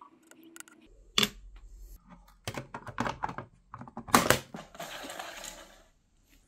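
Hands working a Stylophone's metal stylus in a small glass ink bottle: a sharp click, then a run of clicks and knocks, then about a second of scratchy scraping near the end.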